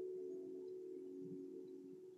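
Soft ambient meditation music of several held, bell-like tones that overlap and shift notes slowly, fading near the end.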